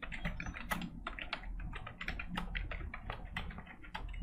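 Typing on a computer keyboard: a quick, steady run of key clicks as a sentence is typed.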